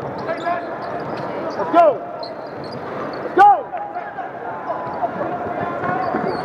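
Basketball being bounced on a hardwood court during play, with players' voices calling out around it. Two short, loud sounds that rise and fall in pitch stand out about two and three and a half seconds in.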